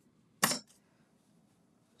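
A single short rustle about half a second in, followed by a fainter one, against a quiet room.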